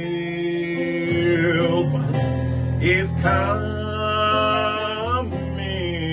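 A man singing a slow sacred song to acoustic guitar, holding long notes that glide between pitches.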